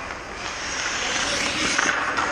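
Hockey skate blades hissing on the ice, growing louder as a skater glides up close. The noise turns into a rougher scrape near the end as the skater stops beside the camera.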